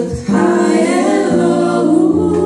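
Women's gospel vocal group singing together in harmony through microphones, holding long notes after a brief break right at the start.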